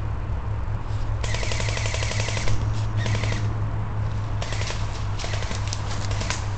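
Airsoft AK-47 replica rifle firing rapid full-auto bursts. A long burst starts about a second in and lasts over a second, a short burst follows near three seconds, and several more short bursts come in the last couple of seconds.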